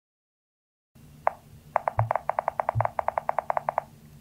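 A fast, even run of short beeps or clicks, about ten a second for two seconds, after a single one on its own, with two soft low thumps underneath.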